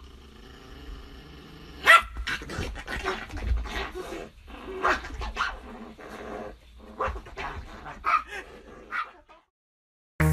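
A small poodle growling, then barking in a run of short, sharp yaps, the loudest about two seconds in; it falls silent shortly before the end.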